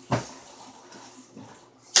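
A single thump shortly after the start, followed by quiet kitchen background noise with a few faint ticks and a sharp click just before the end.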